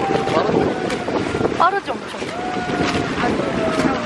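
Wind noise on the microphone over a continuous background din, with distant voices calling and talking.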